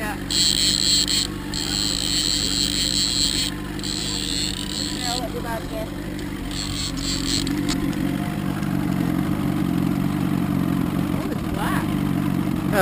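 Outboard motor running steadily at trolling speed. Over it, a fishing reel being cranked whirs in three spells during the first five seconds, then stops.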